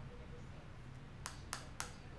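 Three quick, light clicks in a faint room: long acrylic fingernails tapping on the tarot cards laid on the table.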